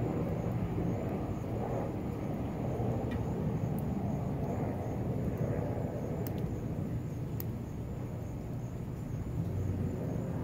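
Steady low outdoor rumble, with a few faint sharp ticks scattered through it.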